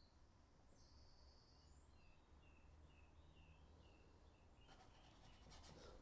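Near silence, with faint birds chirping in the distance. Near the end comes soft scratching as a paintbrush works oil paint on a board.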